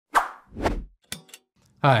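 Logo-animation sound effects: a sharp hit that fades quickly, a second hit that swells and fades with a low rumble, then two short clicks. A man's voice starts just before the end.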